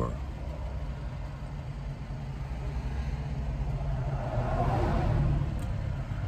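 Steady low rumble inside a parked car's cabin. About four to five seconds in, a passing vehicle outside swells up and fades.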